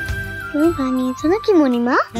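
Comic background score: a held note gives way to a few quick swooping pitch slides that dip and rise again, the last one climbing sharply at the end.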